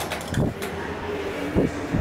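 Steady low hum inside an Otis scenic traction elevator cab just after a floor is called, with two dull thumps, about half a second and a second and a half in.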